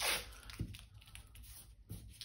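Tape being pulled off its roll, a short ripping noise at the start, followed by quieter small rustles and taps as the strip is handled and laid down.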